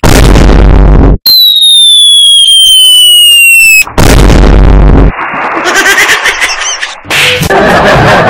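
Edited-in comedy sound effects: a loud blast, then a long falling whistle lasting about two and a half seconds, a second blast about four seconds in, and after it a busy mix of quieter warbling effects.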